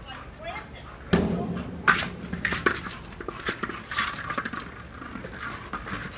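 A dog pushing a hard plastic ball across a concrete floor: a loud bump about a second in, then a run of irregular knocks and scrapes as the ball is nosed and mouthed along.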